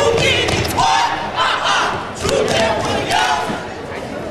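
Crowd yelling and cheering in a large hall, with loud shouted voices rising and falling above the din and a few sharp smacks among them.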